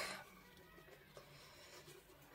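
Near silence: faint dabs of a soft mop brush pressing wet watercolour paint onto hot-pressed paper, barely above the room tone.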